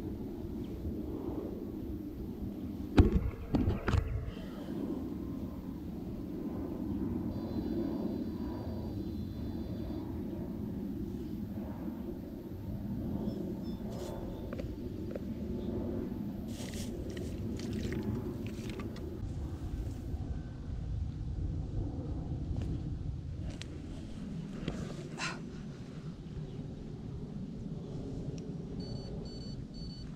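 Handling noise from hands working a bait bucket and tackle close to the camera: a few sharp knocks about three to four seconds in, then scattered fainter clicks, over a steady low outdoor rumble.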